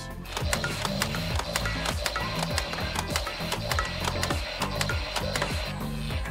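Nerf Zombie Strike Revoltinator flywheel blaster firing foam darts: a steady motor whine with a rapid run of clicks from the firing mechanism, stopping near the end, over background music.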